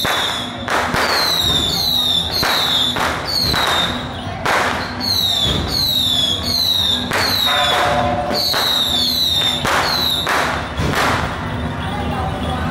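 Firecrackers going off in sharp bangs about once a second, mixed with procession music and repeated short high whistles falling in pitch.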